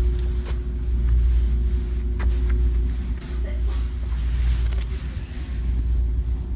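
Steady low rumble of a large store's background noise picked up by a handheld phone, with a faint steady hum over it for the first half. A few light clicks come from merchandise being handled.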